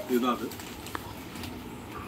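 A pigeon cooing in the background, low and soft, with a single small click about a second in.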